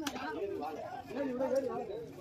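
Several people talking over one another, with one sharp knock, like a knife striking the wooden cutting block, right at the start.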